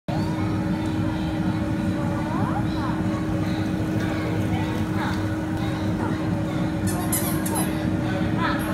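Whirlpool bubble jets in a baby spa tub churning the water: a steady low rumble of bubbling with a constant hum from the pump motor.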